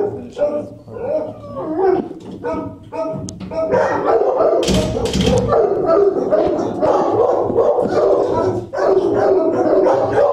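Shelter dogs barking and howling, at first in separate calls and then, from about four seconds in, a continuous din of many dogs together. A brief rumble of microphone handling noise comes around the middle.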